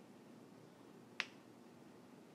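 A single sharp click a little over a second in, over faint steady background noise.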